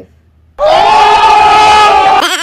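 After a brief quiet, a loud, held vocal cry like a crowd or choir sustaining one note starts about half a second in and runs on steadily.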